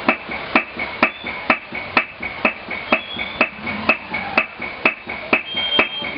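Hand hammer beating a leather packet of metal leaf, a steady rhythm of about two blows a second, each with a short ring.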